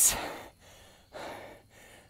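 A man breathing between phrases, catching his breath after a long set of uphill lunges: one breath trailing off just after the start and another a little after a second in.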